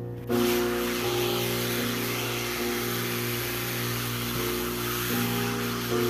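Hand-held hair dryer blowing on wet watercolour paper to dry the paint between washes: it switches on a moment in and runs as a steady rushing hiss. Background music plays underneath.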